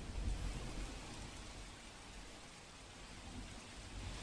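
Rain falling steadily on wet pavement, with a low rumble underneath.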